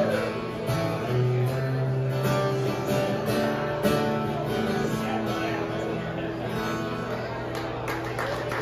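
Acoustic guitars strumming and ringing out the instrumental ending of a song after the last sung line, the sound gradually getting quieter.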